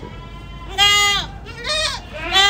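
Aradi goat bleating twice: a long bleat about three-quarters of a second in, then a shorter one near the end.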